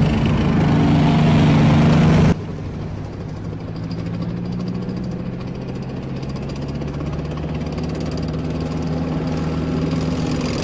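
Tank engine sound effect running loud, then cutting off suddenly about two seconds in to a quieter, steady idle.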